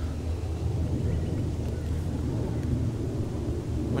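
A steady low rumble with no speech.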